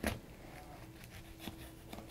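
Chef's knife cutting slowly through a lemon on a plastic cutting board: a short knock at the start, then faint cutting sounds and a small tick about halfway through.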